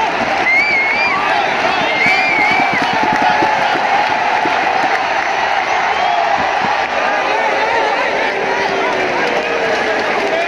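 Large cricket stadium crowd cheering and shouting in a steady, continuous din. A few shrill wavering calls rise above it in the first few seconds.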